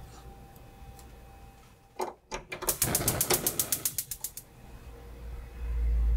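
Gas hob's electric igniter clicking rapidly, about ten clicks a second for nearly two seconds, just after a couple of knocks. A low rumble builds near the end.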